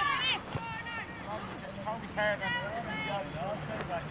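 Distant high-pitched shouts and calls of young players on a football pitch, coming one after another, over a low steady hum.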